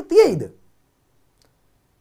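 A man's voice speaking, ending a phrase about half a second in, then silence.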